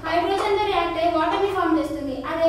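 A woman speaking without a break, lecturing in a mix of languages, over a faint steady low hum.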